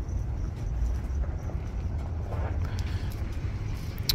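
Outdoor wind rumbling on the microphone: an uneven, steady low rumble with no distinct events.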